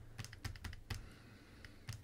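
Faint, irregular light clicks and taps of a stylus on a tablet as numbers are handwritten.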